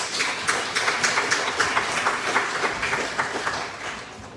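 Congregation applauding by hand after a choir anthem, a short round of clapping that thins out and fades near the end.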